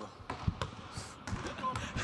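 Basketball bouncing on a hardwood gym floor: a string of thuds, the loudest about half a second in, with voices in the background.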